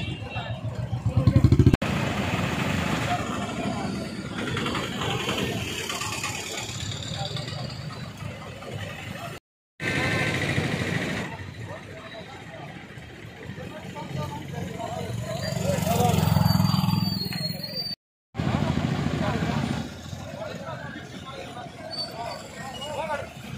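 Street traffic at a busy crossroads: motorcycle and car engines idling and moving off, mixed with people talking. A short engine rev about a second and a half in, and another vehicle swelling louder and fading near the end. The sound cuts out briefly twice at edits.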